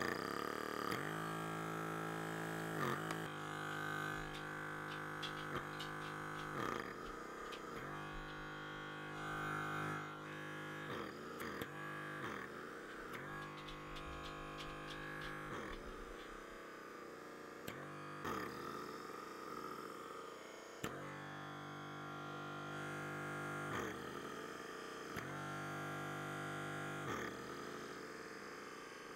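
Background instrumental music, with sustained chords that change every few seconds.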